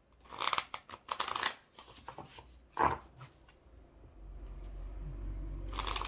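A deck of tarot cards being riffle-shuffled: a few short crackling runs of cards flicking together, the last one near the end. A low steady rumble comes in about four seconds in.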